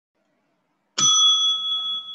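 A single bell-like ding about a second in, ringing on with a clear tone that fades slowly.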